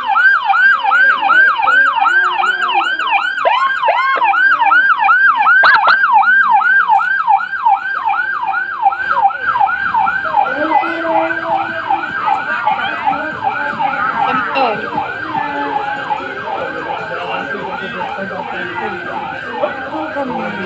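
Electronic siren on a fast yelp, its pitch rising and falling about three times a second. It is louder in the first half and eases off a little after about ten seconds, with crowd noise underneath.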